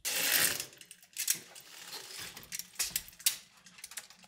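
Hotel window curtain pulled open: a loud swish of fabric in the first half-second, then irregular rattling clicks of the curtain runners along the track.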